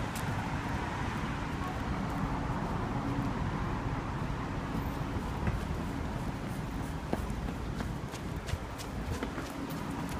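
City street ambience: steady traffic noise with a low hum, and scattered footstep clicks from walking on the pavement.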